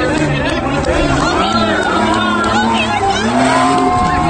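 Two Jeep Grand Cherokee WJs' engines running hard as they race side by side, under loud crowd chatter and shouting.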